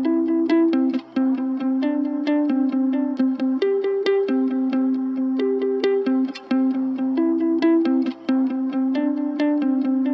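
Pop guitar instrumental: a plucked guitar picking a repeating melodic pattern of notes at a steady tempo.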